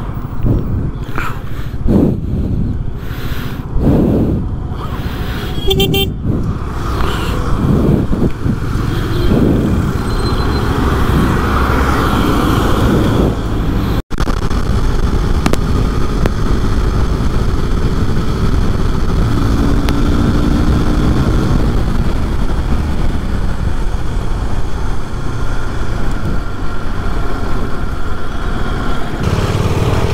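Handling knocks and rustles in the first half. From about halfway, a KTM RC sport motorcycle rides along an open road, its engine running steadily under wind and road noise.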